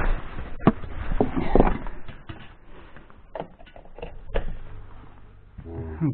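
Clicks, knocks and handling noise as a refrigerator's mains plug is pushed into a wall socket. A low steady hum comes in during the second half as the fridge's compressor starts up with its new thermostat.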